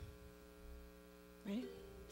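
Faint, steady electrical mains hum from the stage sound system: a low buzz with a ladder of evenly spaced overtones. One short spoken word cuts in about one and a half seconds in.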